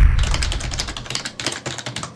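Logo-intro sound effects: a deep boom right at the start, then a rapid run of sharp clicks and crackles that gradually thins out and fades.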